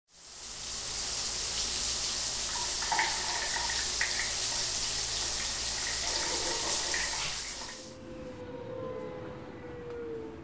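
Shower running, a steady hiss of spray, cut off abruptly about eight seconds in. A soft held chime tone, sliding slightly in pitch, follows near the end.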